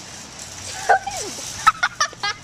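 A girl's short, high non-word vocal sounds: one falling call about a second in, then quick staccato yelps near the end, like giggling or a playful gobbling noise.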